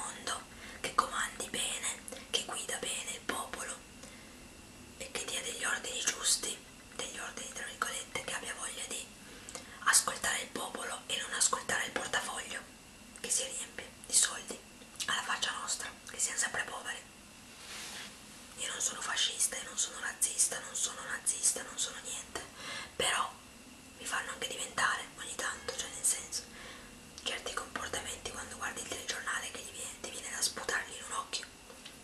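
A woman whispering in Italian, in runs of words broken by short pauses.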